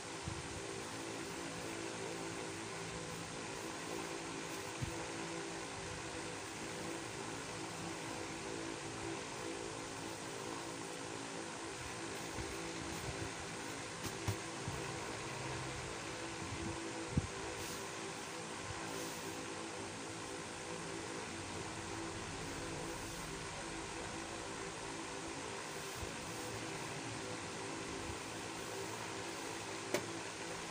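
A motor running with a steady drone and a low hum of several tones, with a few faint knocks.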